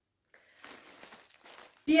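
Faint rustling and crinkling of a clear plastic bag of yarn skeins being handled, starting about half a second in.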